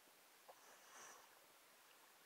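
Near silence, with one faint, soft swish of water about a second in from a swimmer's stroke.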